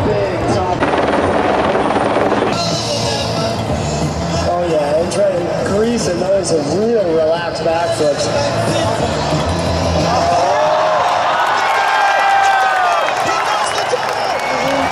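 A large outdoor crowd's voices and cheering over music from a public-address system, with a swell of cheering about a second in.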